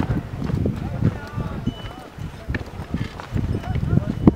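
People's voices talking and calling over irregular knocking steps on a stony trail, the sound of a group trekking on foot with ponies.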